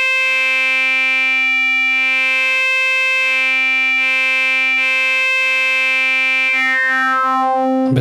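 Korg opsix digital synthesizer holding one sustained note through its wavefolder. The timbre shifts continuously as the wavefolder bias is turned up, with overtones swelling and fading while the pitch stays put.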